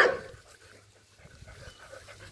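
Two dogs play-wrestling: one short, sharp dog yip right at the start, then quieter scuffling.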